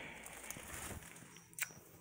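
Faint footsteps and rustling, with a couple of soft clicks, as a handheld phone is carried through a cluttered room.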